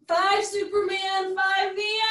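A high voice singing a few held notes of a melody, starting suddenly and running in short phrases at nearly the same pitch.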